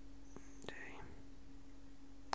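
A person's faint, brief whisper a little over half a second in, with a couple of small clicks, over a steady low electrical hum.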